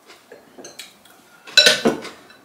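Eating utensils, a spoon and chopsticks, tapping and clinking against ceramic bowls and plates: a few light taps, then a louder clatter of clinks about a second and a half in.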